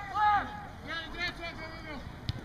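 Indistinct shouting voices from across the field, one call near the start and another about a second in, over faint outdoor background noise.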